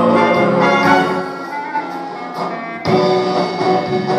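A live band plays an instrumental break in a song. The band softens for a couple of seconds after the first second, then comes back in full just before the three-second mark.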